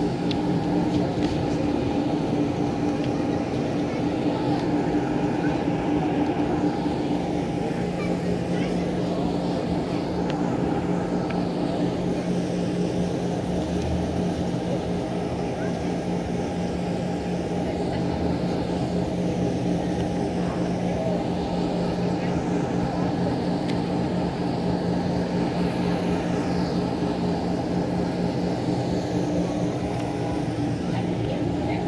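A steady low mechanical hum with a constant drone that holds unchanged throughout, like a motor or engine running.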